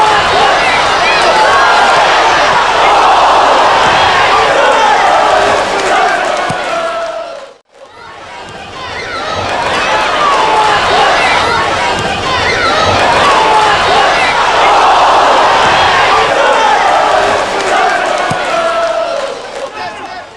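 Football stadium crowd: many voices shouting and chanting together over the match, with a brief break about eight seconds in.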